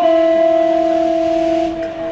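Amplified electric guitar holding one final sustained note at the end of a song, steady, then dropping and fading away near the end.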